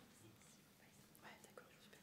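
Near silence: room tone with faint, hushed voices.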